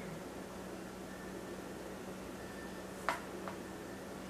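Quiet kitchen room tone with a faint steady hum, and two light clicks about three seconds in as a plastic shaker bottle and measuring cup are handled on the counter while spice powder is poured.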